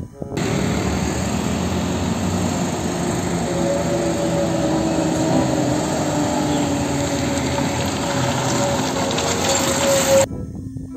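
Heavy fuel tanker trucks driving on a road: a steady rush of engine and road noise with a faint drone, starting and stopping abruptly.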